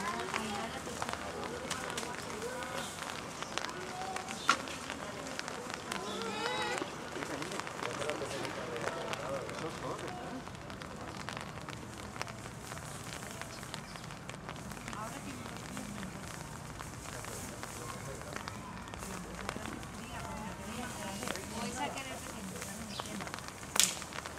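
Indistinct chatter of people talking in the background over a steady crackling patter of rain, with a sharp knock about four and a half seconds in and another just before the end.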